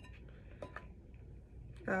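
Utensil stirring and folding a sticky slime mixture in a glass bowl: faint soft scraping with a few small scattered clinks against the bowl.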